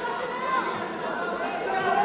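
Indistinct chatter of many voices talking at once in a large hall, with no single clear speaker.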